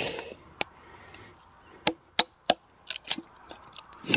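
Hatchet splitting thin kindling on a wooden chopping block: a short cracking split at the start, then several sharp wooden knocks and snaps as small pieces are levered apart and break off.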